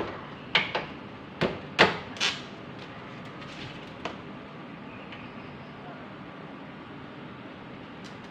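A run of sharp metal knocks and clanks, about six in the first two and a half seconds, then a few lighter ticks: a steel trike frame with its engine mounted being rocked and shifted by hand.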